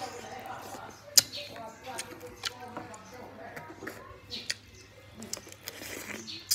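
Mouth noises of someone eating boiled pig's head meat by hand: wet smacking and chewing with a series of sharp clicks, the loudest about a second in.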